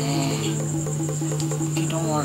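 Crickets chirring steadily at a high pitch over soft background music with a held low note.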